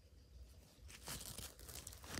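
Faint rustling of Pokémon trading cards being handled, with a few soft crinkles about a second in and near the end.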